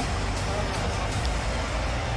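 Steady room background noise with a low hum, during a brief pause in a man's speech.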